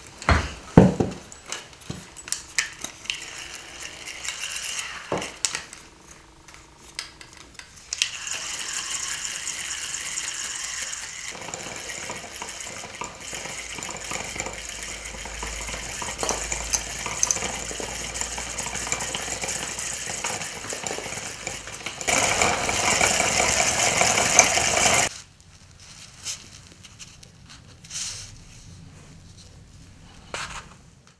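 Small spinning reel on a telescopic pen rod being cranked to spool on four-pound line: clicks and rattles of handling at first, then a steady whir of the reel turning from about eight seconds in. The whir gets louder for a few seconds near the end and stops suddenly, followed by quieter handling clicks.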